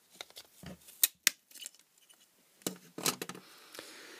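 Insulated diagonal side cutters snipping and cracking through the plastic hub of a computer cooling fan: a series of sharp clicks and snaps, the two loudest just after a second in, with softer crunching and handling noise after.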